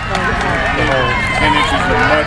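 Spectators shouting encouragement to passing cross-country runners, several voices overlapping.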